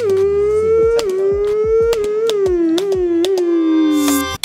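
Racing car engine at high revs, its pitch climbing and then dropping back sharply at each gear change, several times over.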